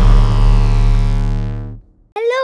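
Synthesized logo sting: a sustained, many-toned chord over a deep rumble, the ringing tail of a big hit, slowly dying away and fading out just before the end.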